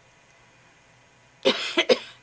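Quiet room tone, then a short burst of coughing by a person, several sharp coughs starting about one and a half seconds in.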